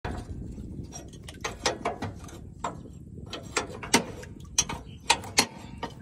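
Irregular metallic clicks and clanks as the linkage and frame of a tractor's spiral-drum paddy implement are handled and adjusted, over a steady low rumble. The loudest clanks come about four seconds in and twice just after five seconds.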